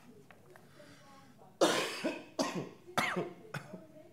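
A person coughing: three loud coughs in quick succession starting about a second and a half in, followed by a small fourth one.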